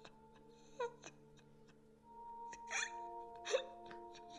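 A woman crying, with a few short sobbing cries, the loudest near the end, over the held notes of soft background music.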